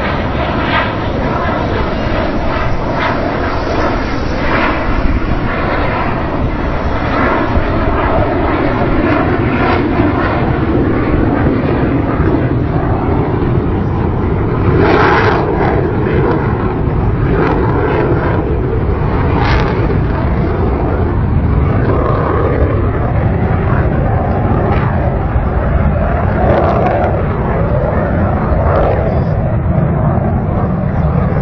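Display aircraft in flight: loud, steady engine noise with no clear rise or fall.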